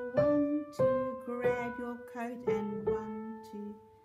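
Piano playing a slow right-hand melody, single notes struck one after another and left to ring.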